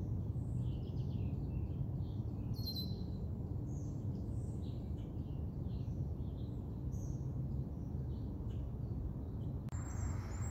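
Small birds chirping here and there in the trees, short high calls scattered over a steady low background rumble.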